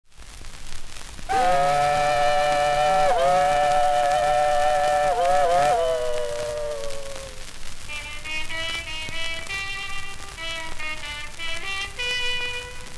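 A held chord of two or three tones imitating a steam-train whistle, dipping in pitch a few times and sliding downward as it fades about six seconds in. Guitars then pick the introduction of the 1928 acoustic recording, all over the hiss of a shellac 78 rpm record.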